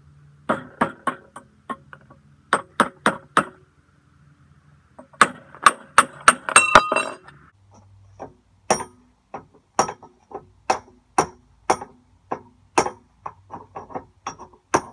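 Hammer blows on a cold chisel against steel plate, chiselling along a fresh plasma cut to free a cut-out bracket. The strikes come in short groups, with a quick flurry about halfway that leaves the steel ringing, then a steady run of blows about two a second.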